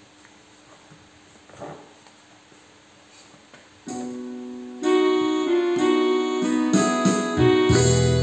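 A quiet pause, then an electronic keyboard starts a song's intro about four seconds in: a held note, then louder chords and melody a second later, with a deep bass coming in near the end.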